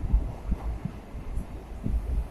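Express train passing at speed: a low rumble of coaches running over the rails with irregular low thuds, and wind from the train buffeting the microphone.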